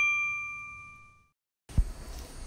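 A single bell-like ding that rings out and fades away over about a second, followed near the end by a short low thump.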